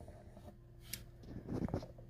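Quiet room tone with a faint steady hum, a faint click about a second in and a soft brief sound near the end.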